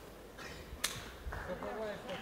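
Quiet arena hall background with a single sharp click a little under a second in, then faint distant voices toward the end.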